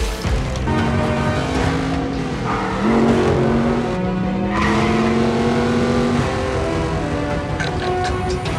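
Film soundtrack of a street race: car engines revving hard under a music score, one engine's pitch rising slowly about halfway through.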